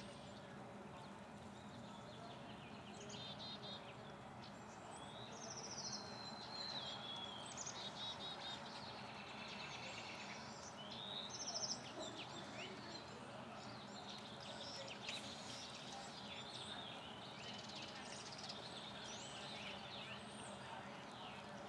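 Birds chirping and trilling intermittently over steady outdoor background noise, with one brief louder sound a little over halfway through.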